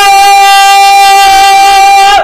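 A man's long, loud held yell of "Hey!" on one steady pitch: a shout of joy at a big scratch-off win.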